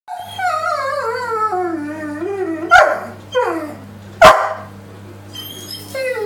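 German Shepherd giving a long, wavering howl that slides down in pitch, broken by two loud barks about a second and a half apart, each followed by a shorter falling whine.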